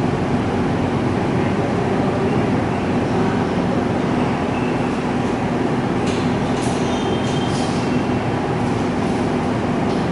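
Steady mechanical noise with a low hum, running evenly throughout, with a few faint short scratchy sounds about six to eight seconds in.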